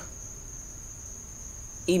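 A steady, high-pitched single tone that runs unbroken, over a faint low hum.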